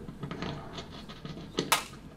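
Microphone being handled close up on a shirt: faint clicks and rubbing, then one loud rustling scrape near the end.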